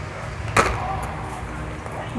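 A single sharp clack of hard plastic about half a second in, as a small tool is handled in a plastic manicure tray, over a steady low hum.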